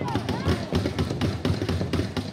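Short shouts from players and spectators over a rapid, irregular clatter of taps and knocks, typical of the noise on a ball hockey rink right after a goal.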